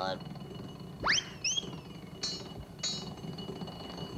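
Cartoon sound effects: a quick rising whistle swoop about a second in, a second shorter swoop that slides back down, then two short, high bell dings, over a low steady hum.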